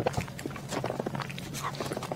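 Close-miked chewing of a bitten pastry: a quick, irregular run of wet mouth clicks and smacks.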